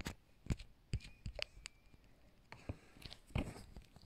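Handling noise: scattered small clicks and taps as plastic electronic kit modules and a 9-volt battery in its holder are moved about on a wooden tabletop.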